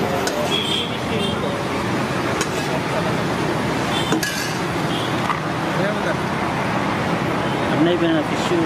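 A steel ladle clinking against stainless-steel food pots a few times while food is served, over a steady wash of road traffic noise and background voices.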